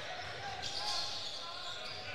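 Basketball game sounds in a large gymnasium: a steady crowd murmur, with the ball bouncing on the hardwood court.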